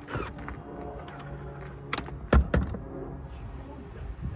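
Electric motor of an Audi Q7's power-folding third-row seat running as the seatback folds down: a steady motor hum with two sharp clicks about two seconds in, half a second apart.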